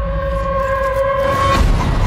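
Horror trailer sound design: a held high note with its octave over a deep low drone, cut off about a second and a half in by a sharp hit, with a few faint clicks after.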